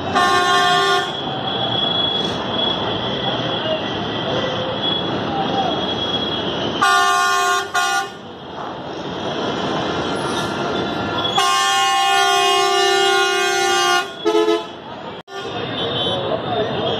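Bus horns honking: a short blast at the start, another about seven seconds in, then a long blast of about two and a half seconds followed by two quick toots, over steady background noise and voices.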